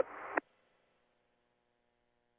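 The last syllable of a man's narration, which stops abruptly just under half a second in, followed by near silence with only a faint steady hum.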